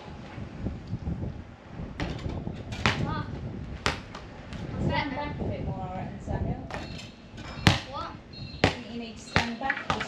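A soccer ball thudding as it is thrown at a basketball hoop and bounces on patio tiles: about six sharp knocks, the loudest about three-quarters of the way in.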